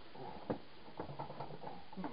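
Faint handling noise: one short knock about half a second in, then a few light taps, as the telescope tube is held and shifted.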